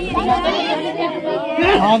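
Several people talking at once, a steady overlapping chatter of voices.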